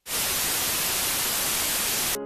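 A loud, steady burst of white-noise static in the broadcast audio that starts abruptly and cuts off suddenly about two seconds later: a signal glitch as the webcast feed switches over during a suspension.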